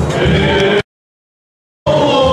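Church singing with crowd noise, cut off abruptly less than a second in; about a second of dead silence follows, an edit gap, before liturgical chanting starts again near the end.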